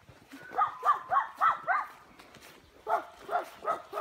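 A dog giving two quick runs of short, high yips: about five in the first couple of seconds, then four more near the end.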